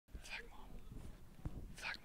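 A faint, hushed voice whispering, with hissy 's' sounds near the start and again near the end. A soft low knock comes about one and a half seconds in.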